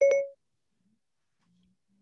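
A single short electronic beep right as the background music cuts off, followed by near silence.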